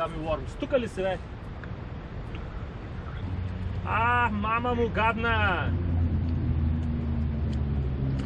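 A low, steady engine drone sets in about three seconds in and holds, under a man's voice.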